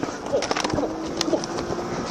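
Police body-worn camera microphone picking up a close-quarters struggle: jostling and rubbing noise on the mic with faint, broken shouts. A sharp click comes about a second in, and a steady low tone runs under the second half.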